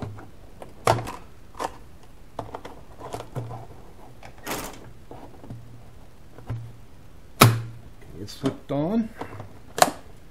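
Hollow plastic knocks, clunks and rubbing as a plastic coolant reservoir tank is pushed and worked by hand into its mount in a Jeep engine bay, at irregular intervals, with the loudest clunk past the middle and a sharp click near the end.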